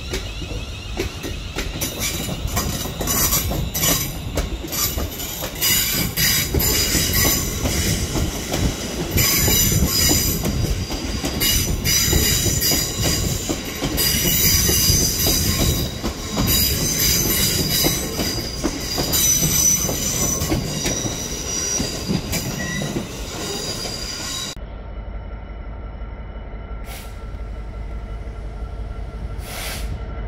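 Electric multiple-unit passenger train moving through station pointwork, its wheels squealing in high, wavering tones amid clicking and rumble over rail joints. Near the end the sound cuts abruptly to a Class 66 diesel locomotive's low, steady engine rumble as it approaches.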